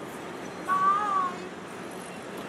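A person's voice giving a single short, high, drawn-out call about a second in, its pitch rising slightly then falling, over steady background noise.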